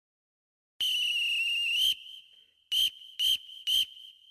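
A whistle blown: one long blast of about a second, then three short blasts in quick succession.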